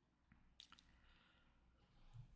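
Near silence: room tone, with a few faint short clicks about half a second in.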